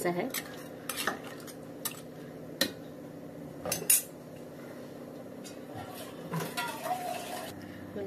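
Steel spoon stirring crab curry in an aluminium pot, clinking and scraping against the metal several times over the first four seconds. The loudest knock comes just before four seconds. The stirring mixes in water just added to the gravy.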